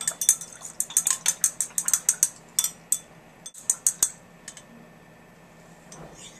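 A quick run of light clicks and clinks for about four seconds, from small metal and glass lab equipment being handled: the hot wire probe and the dial thermometer in the glass beaker of oil.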